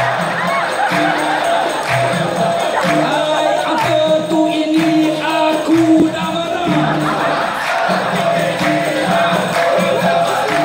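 Dikir barat singing through a PA: a tukang karut's amplified voice holding sung or chanted lines that break every second or so, over crowd noise and the seated chorus clapping.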